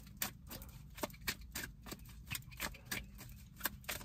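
Tarot cards being handled, making a series of faint, light clicks at uneven intervals.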